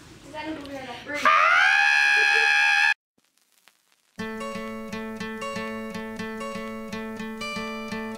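A woman's voice, then one long, loud sung high note that cuts off sharply. After about a second of silence, acoustic guitar music starts with a steady strummed rhythm.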